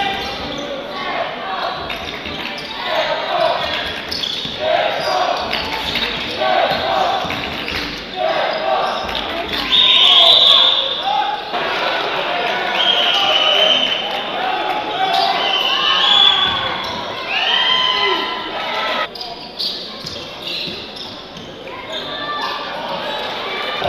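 Live sound of a basketball game in an arena: the ball bouncing on the hardwood court and short, high sneaker squeaks, with voices echoing in the hall. The sound changes abruptly a couple of times where plays are cut together.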